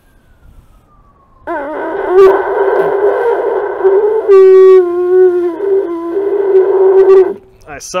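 Cattle horn blown like a trumpet with buzzing lips: one long note of about six seconds that starts about a second and a half in, wavers in pitch at first, then settles into a steady, loud tone with a brief falter near the end. A good, easy-playing horn, sounding fine.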